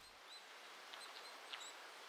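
Faint outdoor ambience with a few short, high bird chirps scattered through it.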